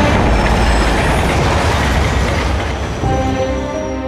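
Metro train rushing through a tunnel: a loud rumbling din with a faint thin high squeal of the wheels over it. It gives way to music about three seconds in.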